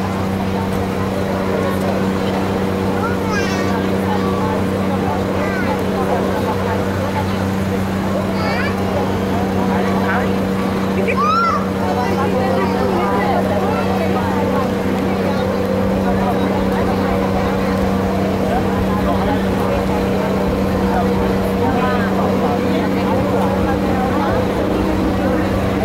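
A steady, low engine hum that does not change in pitch, with the chatter of a crowd of voices over it.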